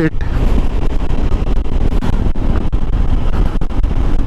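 Wind rushing and buffeting over the microphone of a KTM 390 Adventure motorcycle riding along a road, with the bike's single-cylinder engine and tyres running steadily underneath.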